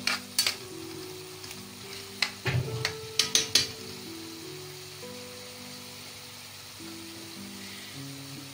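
Sliced liver frying in its juices in a metal pan, with a steady sizzle, while a metal spoon stirs it and knocks against the pan several times in the first few seconds.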